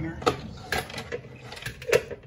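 A few sharp clicks and knocks of hard plastic, the last one, near the end, the loudest, as a plastic salad spinner is opened and its parts handled.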